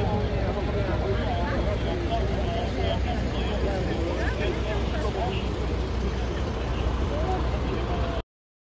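Crowd of people chatting outdoors, many voices overlapping at once, over a steady low rumble.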